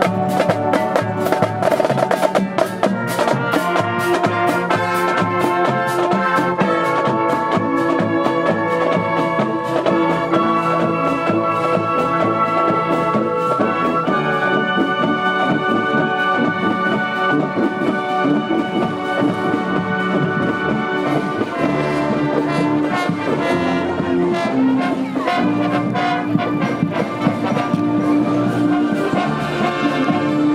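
A marching wind band playing as it walks: saxophones, brass and sousaphones over marching snare and tenor drums. The drumming is busiest in the first few seconds, and then held brass notes take over.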